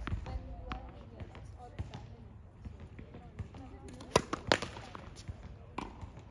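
Tennis ball bounced on a hard court before a serve. There is a sharp thud right at the start and a few lighter taps, then two loud bounces close together about four seconds in.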